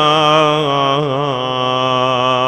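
A male reciter chanting a Shia mourning elegy in Arabic, unaccompanied. He holds one long, wavering melismatic note that steps down in pitch about a second in.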